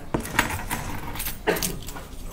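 A quick run of sharp clicks and light clinks close to the microphone, about six in two seconds, the loudest near the start and about three-quarters through, as a person moves right past the recorder.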